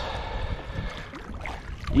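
Wind buffeting the microphone and water slapping against a plastic kayak hull, a steady rush heaviest in the low end.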